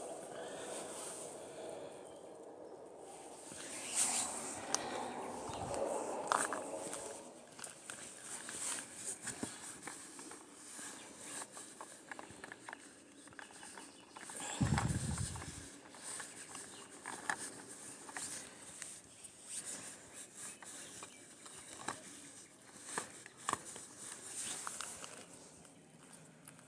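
Footsteps and shuffling on gravelly dirt, with scattered small clicks and rustles. A brief low thump about fifteen seconds in.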